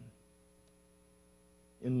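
A pause in a man's speech that holds only a faint, steady electrical hum made of several steady tones, with a thin high whine above them. His voice comes back right at the end.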